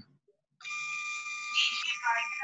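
A steady electronic tone, a bit over a second long, starting just over half a second in, with a voice beginning over its last part.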